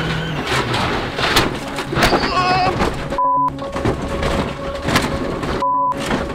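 Onboard audio of a Hyundai i20 WRC rally car crashing and rolling: a loud jumble of engine noise and repeated hard knocks and crunches as the body strikes the ground. The sound cuts out briefly twice in the second half.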